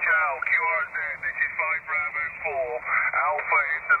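A distant station's voice received on single-sideband through a small Yaesu transceiver's speaker: continuous speech that sounds thin and narrow, like a telephone line, with nothing low or high in it, over a light hiss.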